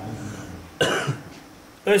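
A man coughs once, short and sudden, a little under a second in.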